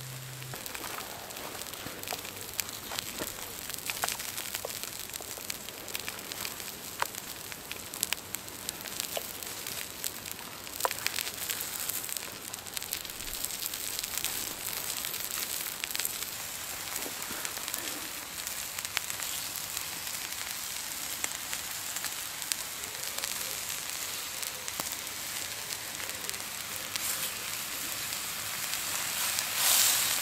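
Sausages, black pudding, haggis and lorne sausage frying in oil on a cooking stone heated over a campfire: a steady sizzling hiss with many small pops and crackles.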